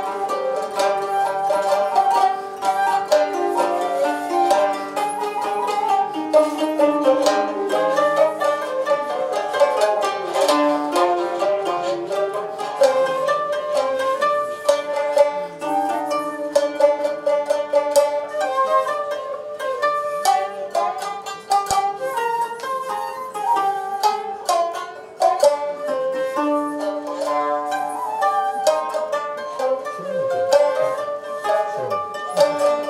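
Traditional Japanese sankyoku ensemble of koto, two shamisen and shakuhachi playing, with a dense run of plucked string notes over a continuous held tone.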